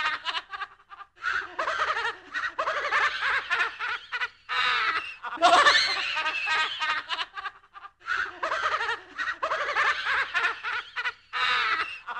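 Spooky horror-style laugh sound effect: one voice laughing, looped so the same laugh repeats about every seven seconds. Each round opens with a loud burst, and there is a short pause between rounds.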